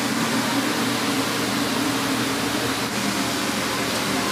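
Steady rushing noise of a commercial kitchen, with gas burners running under large pots of water, and a faint tick about three seconds in.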